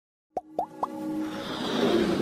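Intro sound effects: three quick rising plops about a quarter second apart, then a swelling whoosh over a held musical tone.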